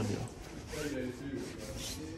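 Clothes rustling and hangers scraping along a metal clothes rail as a hand pushes through garments hanging on it.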